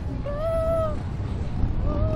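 A young rider's high-pitched, drawn-out vocal wail, heard twice, each under a second long, in the wake of a fit of laughter. A steady low rumble of wind runs under it on the swinging ride.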